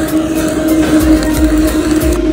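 Handheld kitchen blowtorch flame with a steady rushing hiss as it sears the skin of a striped bass fillet, under steady background music.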